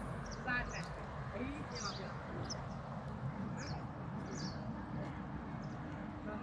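Quiet lakeside ambience with scattered faint, high bird chirps over a low, steady background rumble.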